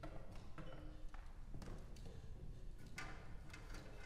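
Scattered knocks, taps and footsteps on a wooden stage floor as performers move chairs and music stands and settle into their seats.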